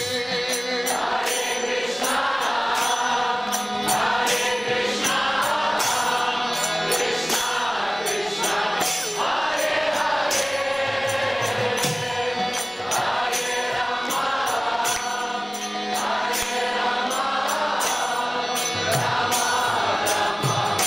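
Devotional kirtan: a lead voice and a group of voices chanting a mantra in alternating phrases, with small brass hand cymbals (karatalas) struck in a steady rhythm.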